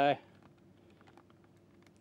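Faint camera-handling noise as the camera zooms in: scattered light clicks and taps over a faint steady hum.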